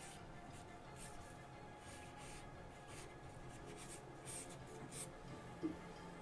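Charcoal scratching across smooth newsprint in a series of short, quick, faint drawing strokes.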